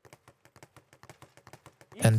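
Leather Everlast speed bag being punched in a fast, even rhythm, rebounding against its overhead platform in faint taps, about eight a second.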